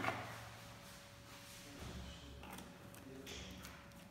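A sharp knock right at the start, then faint swishing and handling sounds as a hand stirs water in a plastic bucket.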